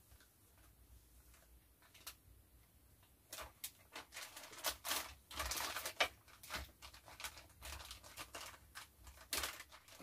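Plastic parts bags crinkling and rustling in irregular bursts as a kitten walks over them, starting about three seconds in.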